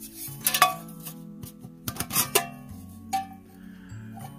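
A stainless steel Swedish army mess kit handled in the hands, giving several light metal clinks and clanks of pot, lid and wire bail, a few with a short ringing tail.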